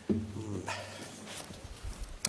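A brief, muffled vocal sound away from the microphones, starting suddenly just after the start, followed by soft rustling.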